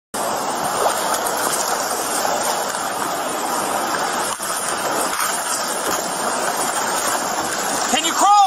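Fast-moving flash floodwater rushing past close to the microphone: a loud, steady, churning rush of water.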